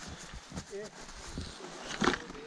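Footsteps on a snowy trail with faint voices of people talking nearby, and a sharp knock at the very end.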